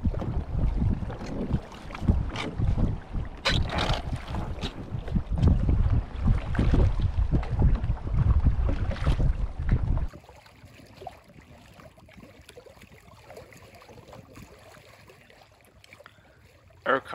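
Wind buffeting the microphone, with irregular paddle strokes and water splashing against paddled canoes. About ten seconds in it cuts abruptly to a much quieter recording of faint lapping water.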